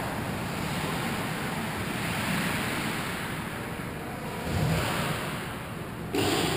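Steady hissing and rumbling ambience of an indoor ice rink, with hockey play far off at the other end. A brief low swell comes a little before the end.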